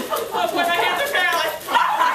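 A person's high-pitched voice making two short, wavering vocal sounds about half a second apart.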